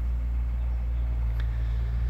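Steady low hum of a motor vehicle engine idling, with no change in pitch or level.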